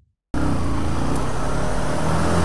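Near silence, then about a third of a second in, a sudden cut to the steady running of a Honda CBR125 motorcycle's single-cylinder four-stroke engine in traffic, under a haze of wind and road noise.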